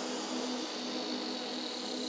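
Steady hiss with a low, even hum: the room tone of a large hall, with no voices or music.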